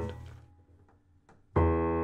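Yamaha C5 grand piano notes struck during tuning: a sustained note fades out, then after a near-silent pause a new note is struck about a second and a half in and rings on steadily.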